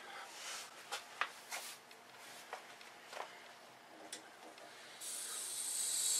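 A few faint clicks and knocks of hands working valves on copper and brass pipework, then, about five seconds in, a sudden steady hiss of cold water rushing through the valve and pipes as the supply is opened to flush the in-floor heating zone.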